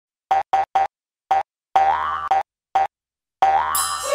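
Channel intro jingle: a short, bouncy synthesized tune of separate notes, three quick ones, then single notes and two longer held ones. A bright sparkle shimmer comes in near the end.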